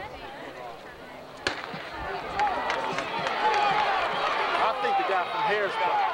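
A single starter's pistol shot about one and a half seconds in, then spectators cheering and shouting, louder from then on.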